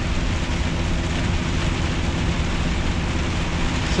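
Inside a heavy truck's cab at motorway speed in rain: the steady drone of the diesel engine under a constant hiss of wet road noise and rain on the windscreen.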